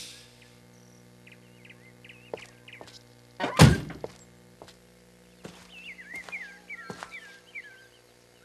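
A car door slamming shut once, loudly, about three and a half seconds in, with a few lighter knocks around it. Short high chirps, like small birds, come in two spells, before the slam and after it.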